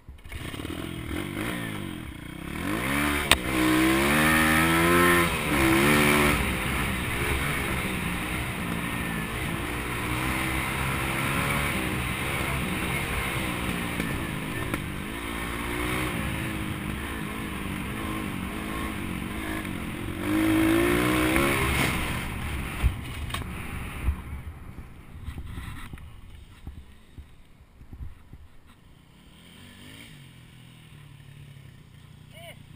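Pit bike's small single-cylinder engine pulling along a dirt trail, heard close up from the rider's helmet. The pitch rises and falls with the throttle: two stronger revs early on and around two-thirds of the way through, with steady running between. The engine note dies away over the last few seconds.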